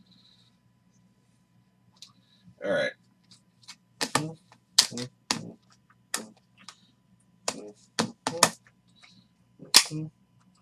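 Clear hard-plastic card holders clacking against each other and the table as they are picked up and set down, a series of about ten sharp, separate clacks starting about four seconds in.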